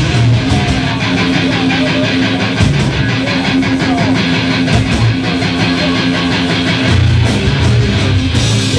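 Live stoner rock band playing loud and distorted: electric guitar over bass and drums, with evenly repeating cymbal strokes throughout.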